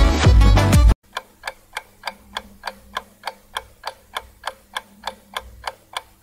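A Tamil song's background music cuts off abruptly about a second in. Then a countdown clock sound effect ticks steadily, about three ticks a second, over a faint hum.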